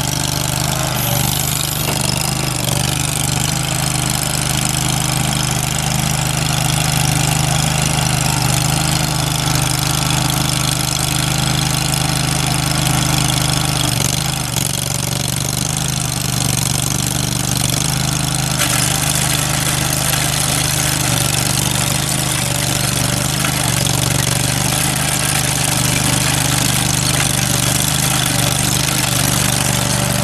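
Ditch Witch Zahn R300 trencher's Kohler Command Pro two-cylinder gas engine running steadily at a constant speed.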